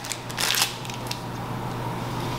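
A brief rustle of objects being handled about half a second in, then a steady low electrical hum of room tone.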